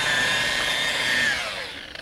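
Makita 9227C variable-speed polisher with a wool pad, buffing a chrome bumper: its motor gives a steady high whine. About one and a half seconds in the whine falls in pitch and fades as the motor spins down.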